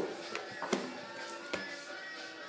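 Faint background music, with four light taps and clicks as a vinyl record sleeve and its box packaging are handled.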